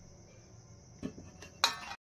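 Steel ladle against a steel bowl of curd-soaked dahi vadas: a quiet stretch, two faint taps about a second in, then a louder brief metallic scrape near the end.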